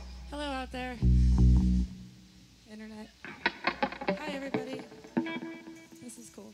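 Electric bass guitar played through an amplifier between songs: one loud, deep note rings for just under a second about a second in. Voices talk and call out around it.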